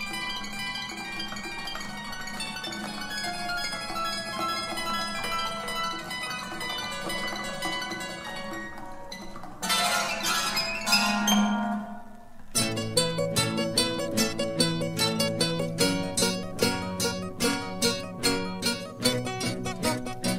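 Instrumental music on plucked string instruments. Long ringing notes fill the first half; the sound changes briefly about ten seconds in. From about twelve seconds a run of quick, evenly paced plucked notes takes over.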